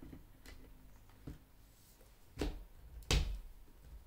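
Hard plastic knocks and clicks as the parts of a Rowenta X-Force 11.60 cordless stick vacuum are fitted together: a faint click about a second in, then two sharp knocks under a second apart, the second the loudest.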